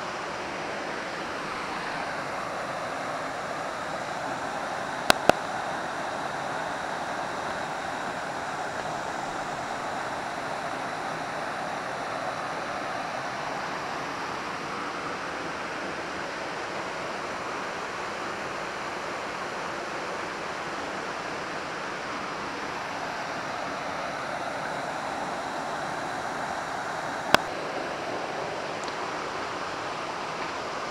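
Steady rush of water from a waterfall and a shallow rocky creek. Two sharp clicks close together about five seconds in and another near the end.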